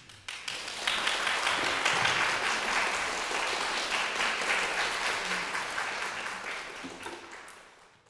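Audience applause: a few separate claps in the first second, then steady clapping from the whole audience that thins out near the end.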